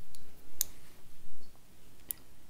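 Metal knitting needle tips clicking against each other as stitches are worked: a few light clicks, the sharpest about half a second in, with soft handling noise from the hands and knitting.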